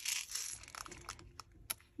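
Soft rustling and crinkling of plastic craft packaging being handled, with a few light clicks and one sharp tap near the end as a jar of wax beads is set down on the table.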